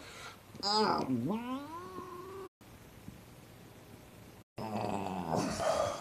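A man's wordless vocal 'magic' noise: a long glide that dips in pitch and then climbs, cut off abruptly. After a stretch of near-quiet broken by brief dropouts in the audio, a second, breathier rising sound comes near the end.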